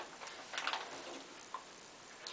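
Faint handling sounds: a few light rustles and small ticks in the first second, then one small click about one and a half seconds in.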